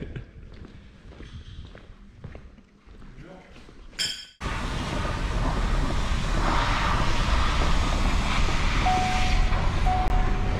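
Brief laughter over quiet shop room tone, then about four seconds in, after a sharp click, a loud steady rumble and rush of noise inside a Ford Super Duty pickup's cab with the engine running.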